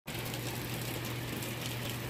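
Heavy rain falling, a steady even hiss, with a constant low hum underneath.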